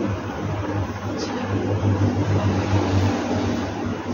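A steady low mechanical hum over a constant noisy background, with a faint click about a second in.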